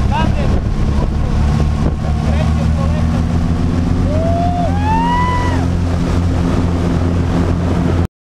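Piston engine and propeller of a small single-engine skydiving plane running steadily, heard from inside the cabin with wind on the microphone, its note rising a little partway through. About four seconds in, a passenger lets out one loud rising-and-falling whoop.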